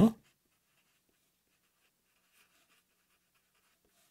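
Faint scratching of a Sharpie felt-tip marker writing on paper, in short, irregular strokes.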